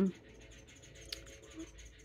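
Myna birds calling with short, faint chirps, one sharper chirp about halfway through.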